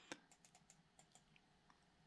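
Faint clicking of computer input while code is being edited: one sharper click just after the start, then a few light scattered ticks, over near silence.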